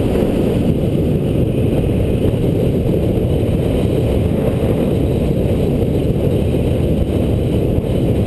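Steady wind noise buffeting a GoPro action camera's microphone on a bicycle descending fast, with the hum of the tyres on asphalt mixed in.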